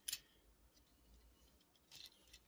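Near silence broken by faint clicks of plastic parts on a Transformers Studio Series 86 Arcee action figure being moved as its legs are flipped up: a quick pair of clicks at the start and another near the end.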